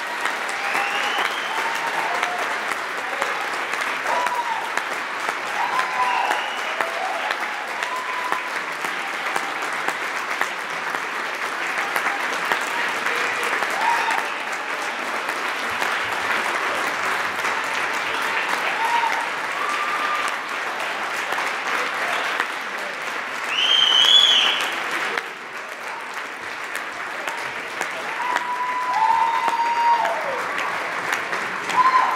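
Audience applauding steadily, with scattered cheering shouts over the clapping. There is a loud cheer about four-fifths of the way through, after which the applause eases slightly.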